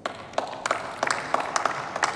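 Applause from a small group of members of parliament, individual claps distinct.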